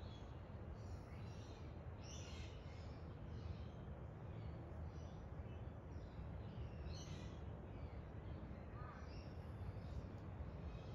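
Faint steady low background rumble with birds calling now and then in the distance.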